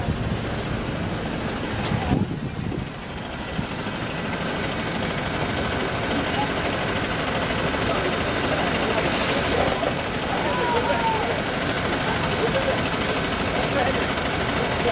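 Wright StreetLite DF single-deck bus running close by, with a sharp click about two seconds in and a short hiss of released brake air about nine seconds in.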